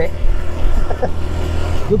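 Small motorbike engine running steadily while riding, with wind rumbling on the microphone; a short laugh near the end.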